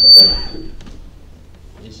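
A steady high-pitched whistle from the chamber's microphone sound system, typical of feedback, stops less than a second in. A short, loud burst of noise comes just as it ends.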